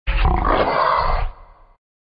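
An animal roar sound effect, loud for about a second and a quarter and then fading away.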